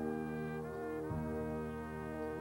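Jazz big band playing: the brass section holds sustained chords under a featured trumpet. A new chord comes in at the start, and the bass moves about a second in.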